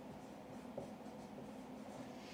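Dry-erase marker writing on a whiteboard, faint scratching and rubbing strokes as words are written.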